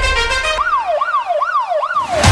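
A siren wailing up and down about four times in quick succession over a break in the background music, whose bass drops out about half a second in. The siren ends abruptly.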